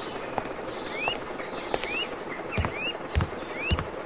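A bird repeating a short rising chirp about once a second, over a faint outdoor background. Three soft low thumps come in the second half.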